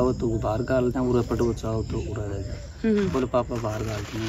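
Speech: conversational talk in an interview, with short pauses, over a steady low hum.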